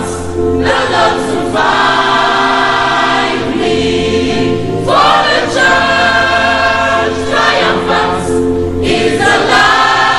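Youth choir singing a gospel song in parts, holding long chords phrase by phrase.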